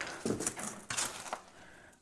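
Footsteps crunching on debris, a quick run of irregular steps that stops about a second and a half in.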